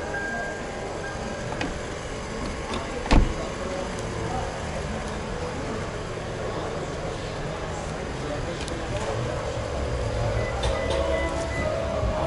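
A car door, on a 2012 Toyota Avalon, is shut with a single sharp thud about three seconds in, over a steady background of voices.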